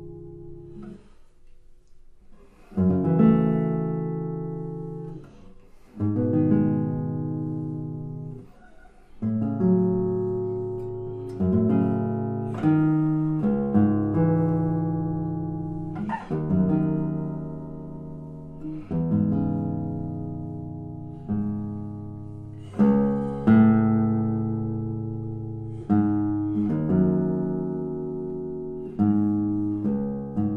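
Seven-string classical guitar played solo: slow, full chords plucked one after another, each left to ring and fade away. The opening is soft, and the first loud chord comes about three seconds in.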